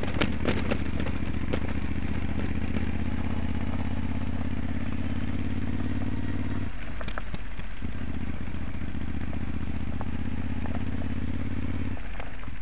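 Moto Guzzi Stelvio's 1151 cc 90° V-twin running steadily at light throttle on a rough gravel track, with loose stones clattering and ticking under the bike in the first second or so. About seven seconds in, the engine note drops away for about a second, as if the throttle is rolled off, then comes back.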